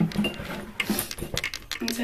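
Irregular small clicks and taps from objects being handled close to the microphone, with a few brief faint voice sounds.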